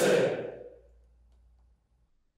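A large group of voices calling out together in unison, cutting off about half a second in and dying away in the hall's echo, followed by near silence.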